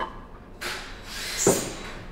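Aluminum quench plate scraping as it is slid about by hand over metal, with one sharp knock about one and a half seconds in.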